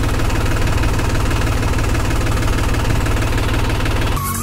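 Tractor diesel engine running steadily with an even low pulsing, heard up close from the driving seat as the tractor moves slowly along.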